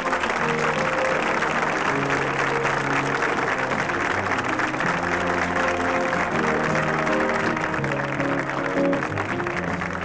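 Studio audience applauding steadily, with music playing underneath.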